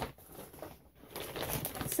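A plastic snack pouch crinkling as it is picked up and handled. A dense rustle of fine crackles starts about halfway through.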